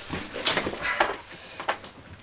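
A few short knocks and rustles: a door and the cloth bags hanging on it being handled and pushed aside.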